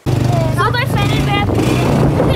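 A car engine's low steady hum heard inside the cabin, under loud children's voices.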